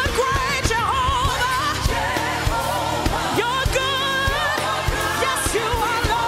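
Live gospel worship song: a lead singer's voice wavering with vibrato, joined by backing vocalists, over a band keeping a steady beat.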